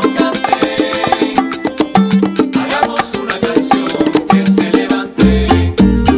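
Salsa-style Latin band music with busy, rhythmic percussion and pitched instruments, and no vocals heard. About five seconds in the band breaks briefly, then comes back on heavy low bass notes.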